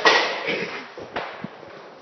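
A loud sharp bang with a short ringing tail, followed by a few lighter knocks over the next second and a half.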